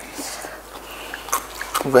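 A quiet pause in a small room with a few faint, short clicks, then one short spoken word near the end.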